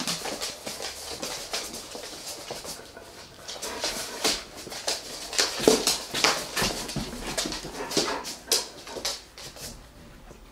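Dogs moving about and sniffing close by, one nuzzling a hand, with irregular clicks and rustles and a few brief soft whines.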